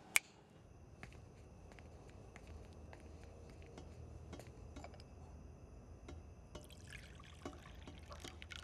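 Coffee poured from a glass carafe into a cup near the end, faint, after scattered small clicks of glass and crockery being handled over a low hum. A single sharp click sounds just after the start.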